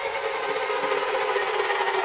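Contemporary orchestral music with live electronics: a dense cluster of held tones, steady in pitch, slowly growing louder.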